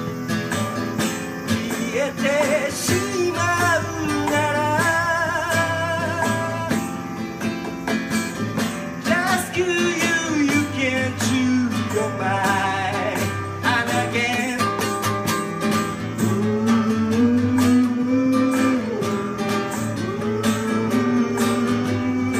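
A man singing a song with his own acoustic guitar strummed steadily beneath, his held notes wavering with vibrato.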